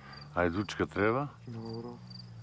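Crickets chirping in a meadow, short high chirps repeating about three times a second, under a man's voice.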